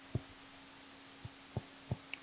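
Four soft, low knocks over a faint steady hum: one near the start, then three closer together in the second half, made while a box is drawn around a formula on screen.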